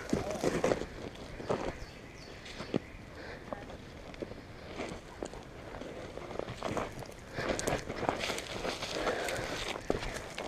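Footsteps in boots on a dirt trail, with irregular crunches, thuds and the rustle of brushing past weeds and branches; the steps get busier and louder over the last couple of seconds.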